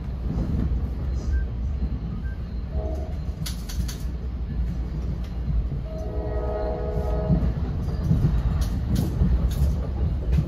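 Train horn sounding from inside a moving passenger coach: a short note about three seconds in and a longer one from about six seconds in, over the steady low rumble of the train running on the rails. A few sharp clicks from the wheels and track come about four seconds in and again near the end.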